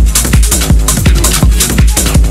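Hard tekno DJ mix: a heavy, distorted kick drum pounding a little under three beats a second, each kick a falling bass thump, under dense electronic synth layers.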